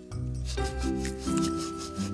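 Background music with held, stepping notes, over the scratchy rubbing of a paintbrush dragging thick paint across a painted board in repeated strokes.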